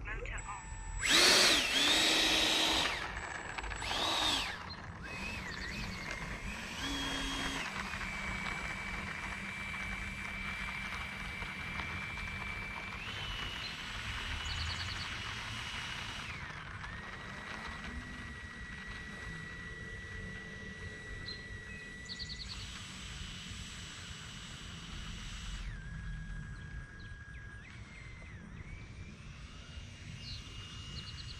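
Whine of an E-flite F-16 Thunderbirds 70 mm electric ducted fan. It spools up in two short bursts, the first and loudest about a second in, then holds a steady whine that steps up and down in pitch with the throttle as the jet taxis along the runway.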